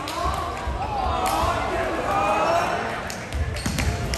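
Voices chattering in a gym hall, then a volleyball bouncing on the hardwood floor a few times near the end.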